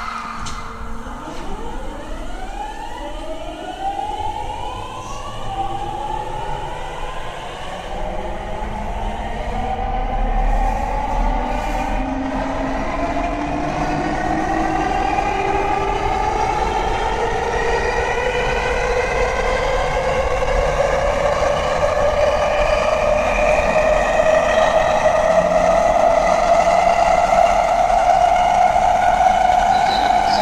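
Mitsubishi GTO-VVVF traction inverter of a Rinkai Line 70-000 series train, not yet renewed, as the train accelerates. Several whining tones sweep steeply up in pitch over the first few seconds. A strong tone then climbs slowly and grows louder as the train gathers speed.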